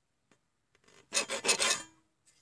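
A sheet of paper being handled and rubbed close by: about four quick rasping rubs, starting about a second in and lasting under a second.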